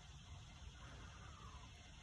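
Near silence: faint steady background hiss with a low rumble.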